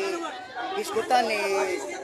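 Speech only: a man talking, with other voices chattering behind him.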